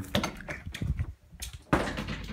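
Interior door's knob turned and latch clicking in a quick series of sharp clicks, then the door pushed open with a louder knock near the end.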